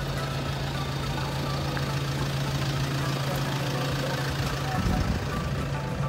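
Toyota Fortuner turbo-diesel 4x4 idling, a steady low hum, with a brief louder noise about five seconds in.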